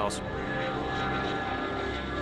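A-10 Thunderbolt II jet flying overhead, its twin turbofan engines giving a steady whine.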